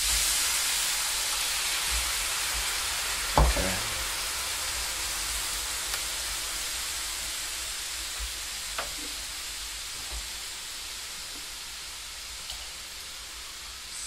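Water hitting a very hot non-stick frying pan of caramelized gummy candy, hissing and boiling violently; the hiss starts suddenly and slowly dies down as the pan cools toward boiling point. A single sharp knock about three and a half seconds in, and a few faint clicks later.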